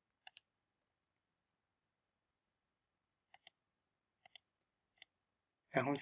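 Computer mouse button clicks, mostly in quick press-and-release pairs: one pair right at the start, two more pairs past the middle, and a single click shortly before the end, with dead silence between them.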